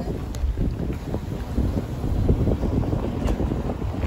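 Low, steady rumble of a car driving slowly along a road, with wind buffeting the microphone.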